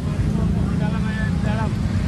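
Outdoor street ambience: a steady low rumble of road traffic with voices talking in the background, picked up on a handheld camera's microphone.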